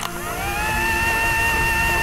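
Microwave oven sound effect: a click as the door shuts, then the oven running with a steady hum and a whine that rises briefly and then holds steady.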